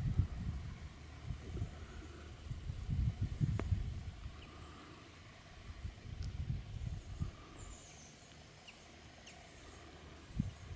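Wind buffeting the microphone outdoors in irregular low gusts, heaviest at the start and again around three to four seconds in, then easing, with faint open-air rural ambience underneath.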